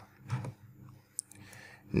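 A quiet pause with one sharp click about a second in.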